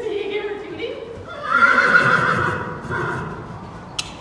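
A horse whinnying: one long call starting about a second and a half in and lasting nearly two seconds, the loudest sound here. Underneath it are the soft hoofbeats of a horse trotting on arena sand.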